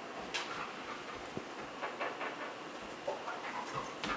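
A trained bed bug detection dog searching a room, sniffing and moving about quietly, with scattered light clicks and taps.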